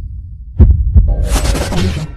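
Electronic outro music: two deep bass thuds about half a second in, followed by a loud hissing burst of noise.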